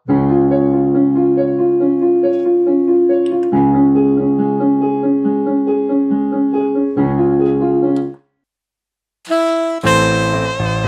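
Kurtzman K650 digital piano's auto-accompaniment playing a pop style at tempo 70: held keyboard chords over a light rhythm, changing chord about three and a half seconds in. It stops about eight seconds in, and after a second of silence a brighter keyboard passage begins near the end.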